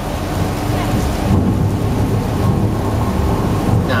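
Staged thunder effect: a long, low rumble that swells about a second in, over the steady hiss of water falling from an overhead sprinkler rain effect.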